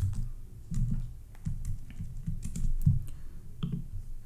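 Computer keyboard keystrokes: a run of irregular taps and clicks as a URL is edited.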